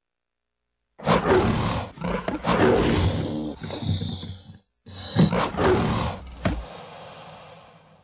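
Animal roars of the MGM logo, here over the logo with a crocodile in the ring. They come in two loud groups, about a second in and again just before five seconds, split by a brief silence, and the second fades away near the end.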